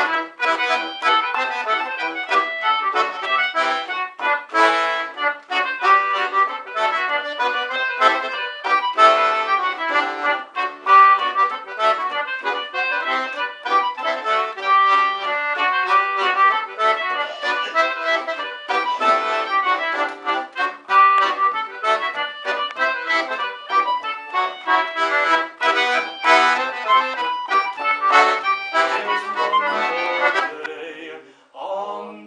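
Three concertinas playing an instrumental folk tune together, reedy chords and melody with quick, even note changes; the tune comes to its close at the very end.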